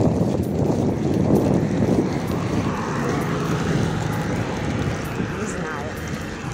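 Street traffic: a motor vehicle running past on the road, with wind rumbling on the microphone.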